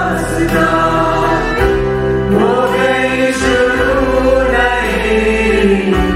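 Choir singing a slow hymn in long held notes over a steady low accompaniment.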